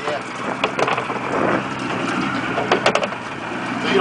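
Mercury 90 outboard motor idling steadily, with a few sharp knocks and clatters as water skis are handled on the boat, most of them about three seconds in.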